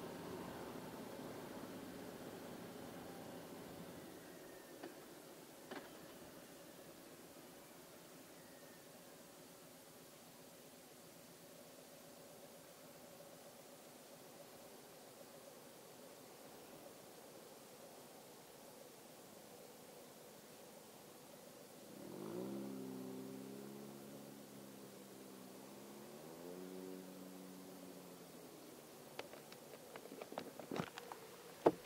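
Harley-Davidson Street Glide V-twin, faint and low, its note fading in the first few seconds as the bike slows to a stop, then a low idle rumble. About two-thirds of the way through, an engine note rises in pitch, levels, then rises again as a vehicle pulls away at the intersection.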